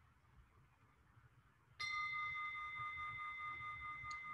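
A meditation bell struck once about two seconds in, after near silence, ringing on with several steady overtones that slowly fade. It marks the close of the meditation sitting.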